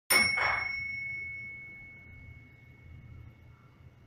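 Elevator chime: a bright ding struck twice in quick succession, its single tone ringing on and fading away over about four seconds.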